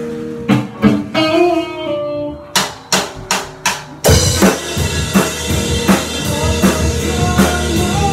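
Live rock band starting a song: held electric guitar notes and a few loose drum hits, then four sharp hits before the whole band comes in together about four seconds in, with a steady drum-kit beat under bass and guitar.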